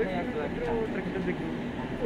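Indistinct talking voices over a steady low background hum.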